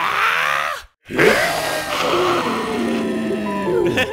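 A cartoon voice straining hard: a short strained cry, a brief break, then one long, wavering strain of about three seconds. It is the effort of trying to force a blocked nose clear, and the nose stays blocked.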